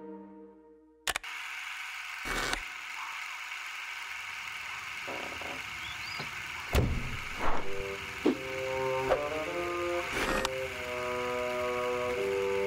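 Film sound design: the title music fades out, then a sharp click starts a steady high hiss of night ambience, broken by a few sudden thumps. Soft held music notes come in a little past halfway and build toward the end.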